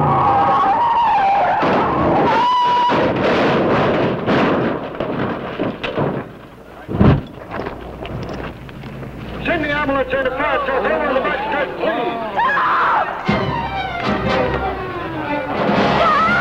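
1957 Ford stock car barrel-rolling and crashing: tyres screeching and metal crashing for several seconds, then a single loud bang about seven seconds in as the car bursts into flames. After the bang come voices screaming over dramatic film music.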